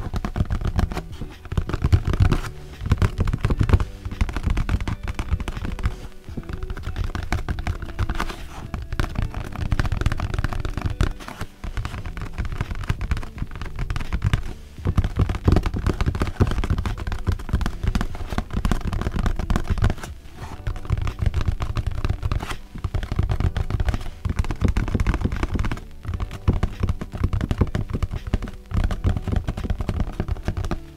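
Fingertips tapping rapidly on a cardboard shipping box: a fast, continuous patter of taps with a few brief pauses.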